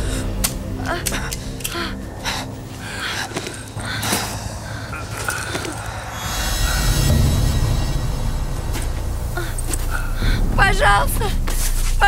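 Dramatic film score: sustained tones with scattered soft hits in the first half, then a deep low drone from about halfway. Near the end a voice cries out.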